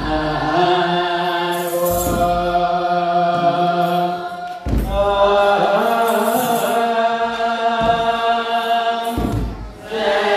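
Ethiopian Orthodox wereb chant: a choir of young male voices singing a Ge'ez hymn in unison in long held phrases, a new phrase starting about halfway through. Low kebero drum strokes and the jingle of shaken sistra accompany the singing.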